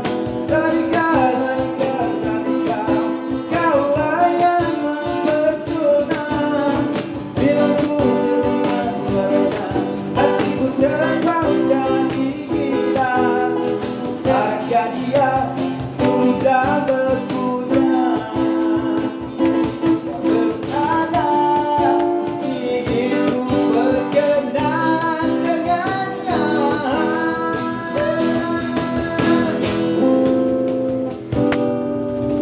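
Live busking performance of a Malay pop song: a singer's voice over a strummed cutaway acoustic-electric guitar, with a steady rhythmic pulse.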